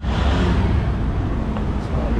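Outdoor street ambience: a steady low rumble of road traffic with general noise, with no clear single event.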